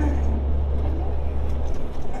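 Low, steady rumble and road noise inside the cab of a moving vehicle, with the deep rumble cutting off suddenly shortly before the end.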